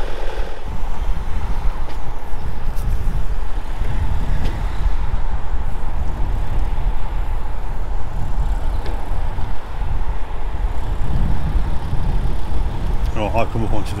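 Road traffic passing over the bridge: a steady, wavering low rumble of cars.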